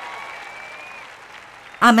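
Large arena audience applauding, the applause fading away.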